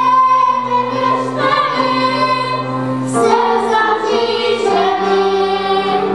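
Girls' choir singing with piano accompaniment, the voices holding long notes that change every second or two.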